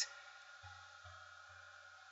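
Faint room tone: a low steady hum with light hiss, no distinct sound event.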